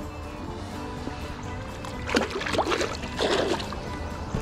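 Background music with steady held notes. About two seconds in, a brief stretch of water splashing and sloshing as a brick is set down into the shallow river.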